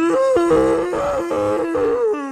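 A long, loud, wavering groan from the actor playing Frankenstein's creature, the first sign of the creature stirring to life. It jumps between two pitches with short breaks and slides down just after the end.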